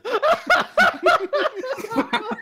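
People laughing: a run of short, quick laughs, several a second.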